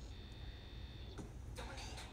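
Quiet pause with a faint, steady low hum of background noise, and faint thin high tones for about the first second and a half.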